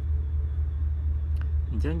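A steady low hum runs under a pause in speech, with one faint tick about one and a half seconds in. A voice starts again near the end.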